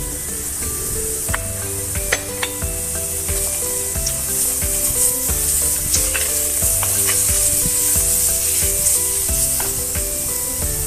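Onion, tomato and ginger-garlic paste sizzling in a stainless steel pot, with a wooden spatula stirring and scraping, giving scattered light clicks.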